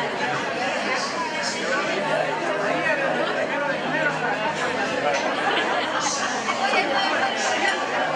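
Many guests talking at once: a steady, indistinct chatter of overlapping voices.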